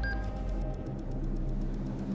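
Soundtrack sound design: a short beep, then a low steady drone with faint, fast ticking at about nine ticks a second.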